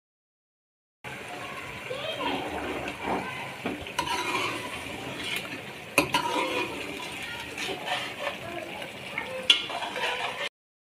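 A metal spoon stirring a meat curry in a metal karahi, scraping through the gravy and clinking against the pan. It starts about a second in, with three sharp knocks of spoon on pan, the last near the end.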